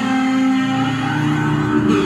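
Headless electric bass played through effects pedals in an ambient improvisation: sustained, overlapping notes that ring on, with the notes changing about half a second in and again near the end.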